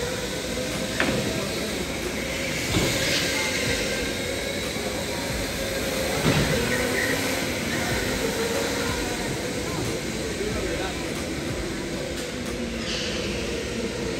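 Electric go-karts running on an indoor track, their motors whining in several pitches that rise and fall as karts speed up, slow and pass, with a few sharp knocks along the way.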